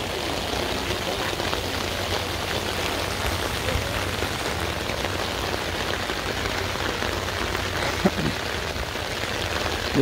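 Steady rain falling, pattering on an umbrella held over the microphone.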